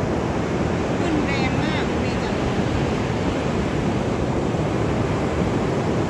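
Surf breaking and washing up a beach at high tide, a steady rush of waves with wind noise on the microphone. A few brief high chirps sound about a second in.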